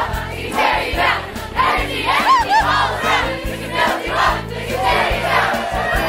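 A choir of many voices singing a song over instrumental accompaniment with a steady bass line.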